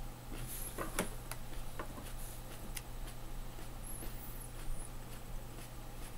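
Faint chewing of a firm, meaty habanero pepper pod: a few scattered soft clicks over a steady low hum.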